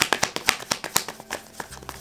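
Tarot cards being shuffled and handled, a rapid, irregular run of sharp card clicks and snaps.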